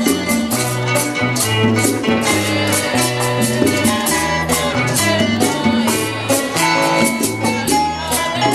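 A live Latin folk band playing a steady up-tempo number: strummed and plucked guitars over a moving bass line, with hand-held frame drums and other percussion keeping an even beat.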